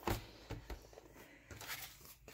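Faint handling noises: a paper envelope being moved and set in place, with a few light knocks and rustles.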